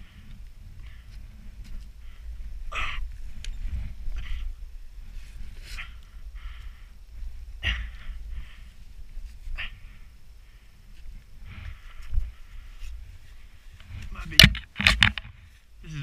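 A rider breathing hard, with short puffs and grunts, while lifting a fallen Yamaha dirt bike back upright. Two loud knocks come near the end.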